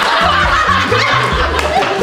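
A group of people laughing and snickering over background music with a steady bass line.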